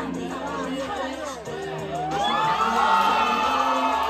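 Crowd cheering and shouting over loud electronic dance music; the shouting swells about halfway through.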